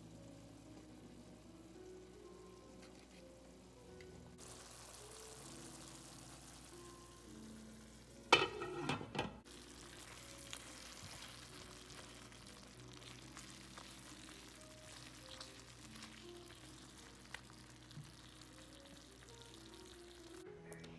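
Chicken pieces frying in a nonstick pan and being stirred with a spatula: a faint sizzle that sets in about four seconds in, under quiet background music. A brief louder scrape about eight seconds in.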